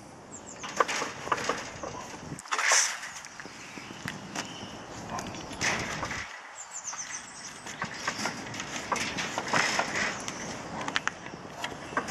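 A puppy's claws scratching and knocking at a wooden gate with wire mesh, in irregular scrapes and taps, with a few louder scuffles about three, six and nine seconds in.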